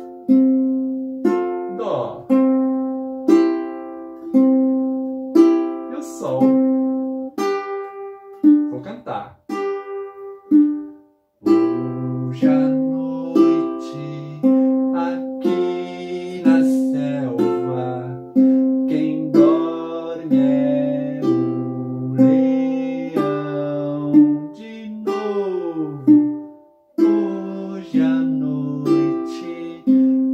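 Ukulele fingerpicked in a steady repeating pattern: strings 4, 2 and 1 plucked together, then string 3 alone, twice per chord through C, F, C and G. From about twelve seconds in, a man's voice sings the melody over it.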